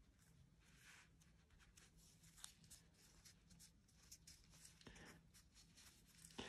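Near silence, with faint scattered ticks and rustles of fingers handling and pressing fabric onto a small earring disc.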